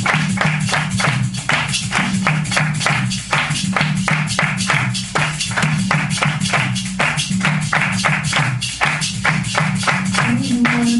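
Live Brazilian-style percussion music: several pandeiros (jingled frame drums) played together in a fast, even rhythm, about four or five strokes a second, over a steady low tone.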